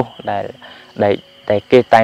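A man speaking Khmer in short phrases, with a steady high-pitched insect trill running behind the voice.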